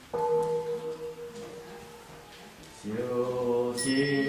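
Buddhist devotional chanting: one voice starts suddenly on a long held note, and more voices join about three seconds in. Near the end a bell is struck and keeps ringing.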